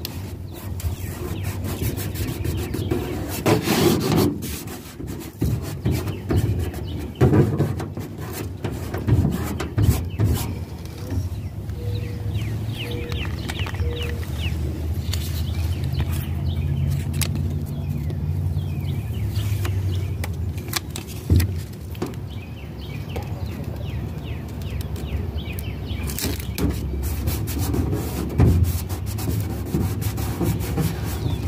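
Hands handling and peeling vinyl stickers and their paper backing and rubbing them flat onto a wooden boat wall: a run of crinkles, rubs and small taps over a low steady rumble.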